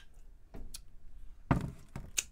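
A drinking glass handled on a desk: a few light knocks and clicks, and a dull thump about one and a half seconds in.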